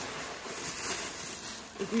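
Tissue paper rustling as it is pulled out of a cardboard box, a continuous papery hiss. A voice starts to laugh near the end.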